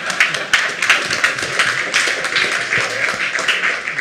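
Audience applauding: many hands clapping in a dense patter that eases off near the end.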